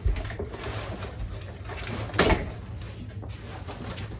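Large cardboard box being handled: a thump at the start, then rustling and scraping of the cardboard, with one louder burst of handling noise about two seconds in.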